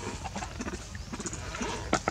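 Light scattered clicks and knocks as a young macaque moves about a plastic bowl on stone, with one sharp knock near the end, over a low rumble.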